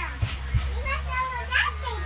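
Young children's voices, short calls and vocal sounds rising and falling in pitch, over a steady low hum. Two soft knocks come in the first half-second.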